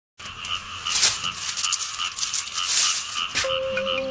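Dry coconut leaves rustling and crackling, loudest in two bursts, over a steady rhythmic chirping of about four chirps a second. Flute-like music starts near the end.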